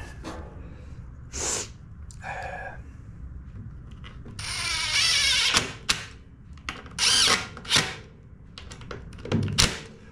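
Cordless driver running in several short bursts as screws are driven to fasten the mower engine's cover back on. The longest run, about a second and a half, comes about four and a half seconds in.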